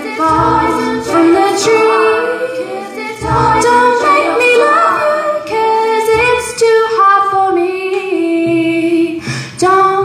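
Live looped a cappella female vocals: several layers of her own voice, recorded on a loop pedal, sing overlapping harmonies, with a low sung note returning about every three seconds.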